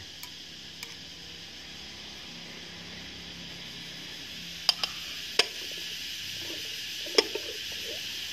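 Four sharp ceramic clinks as a white porcelain plate is handled and set over a porcelain bowl to cover it. They fall in the second half, over a steady faint hiss.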